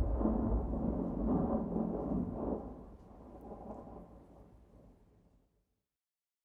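Rolling thunder, a deep rumble that dies away over about five seconds into silence.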